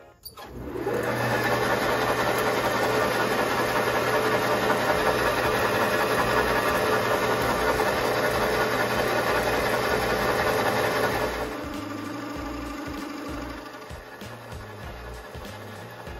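Metal lathe running up to speed and turning a brass bar while a V-shaped cutting tool cuts grooves into it, a steady loud mechanical run with a low hum. About eleven seconds in it drops to a quieter, steady running.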